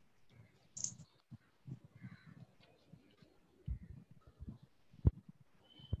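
Faint scattered clicks and soft taps from handling a lip gloss and makeup items, with one sharper click about five seconds in.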